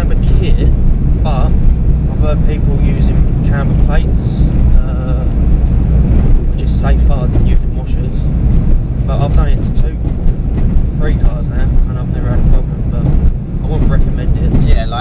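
Steady low rumble of engine and road noise inside the cabin of a moving car, with voices talking intermittently over it.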